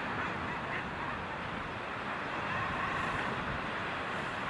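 Common guillemot colony calling: a dense, steady chorus of calls from many birds crowded together on a breeding ledge.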